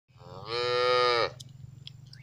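A young calf bawling once: a high-pitched moo about a second long that drops in pitch and cuts off sharply.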